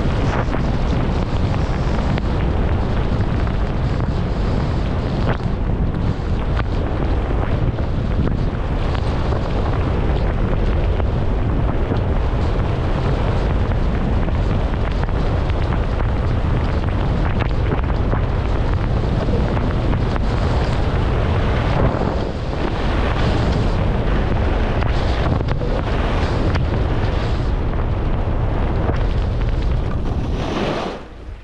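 Wind buffeting the microphone of a skier's camera during a fast downhill run, mixed with skis running over packed, groomed snow; a steady, loud, low rushing noise with a brief dip about three-quarters of the way through.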